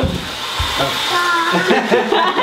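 Toilet flushing: a steady rushing hiss of water, with a low thump about half a second in and brief voices over it in the second half.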